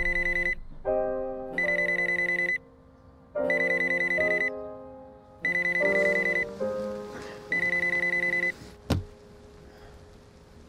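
A bedside alarm beeping in rapid pulses, in bursts of about a second roughly every two seconds, with soft pitched notes beneath. It stops after a single sharp click about nine seconds in.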